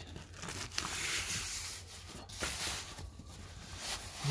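A hook-and-loop (Velcro) strap ripping, with seat-cover fabric rustling, as the cover's hook Velcro is pulled and pressed onto the carpet under the seat. There are two rasping stretches, a longer one in the first half and a short one about two and a half seconds in.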